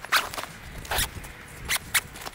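Nylon zipper on a backpack's front admin panel being pulled closed in about four short rasping strokes, with fabric handling in between.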